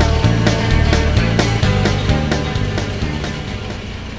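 Background music with a steady beat over a bass line, fading out through the second half.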